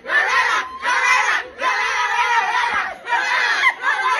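A group of young women barking like dogs together in repeated shouted bursts, about one a second, with laughter mixed in.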